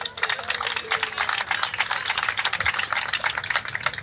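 A small crowd applauding, many hands clapping steadily.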